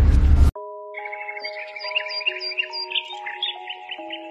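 The tail of a loud rumbling boom effect cuts off suddenly about half a second in. Soft music of long held notes follows, with birds chirping rapidly over it.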